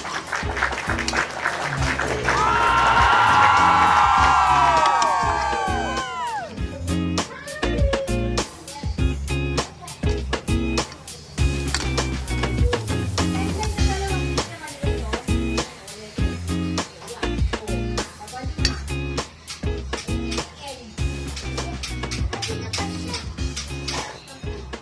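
Background music with a steady beat and bass line. About two seconds in, the loudest part is a cluster of tones that sweep downward and fade out by about six seconds.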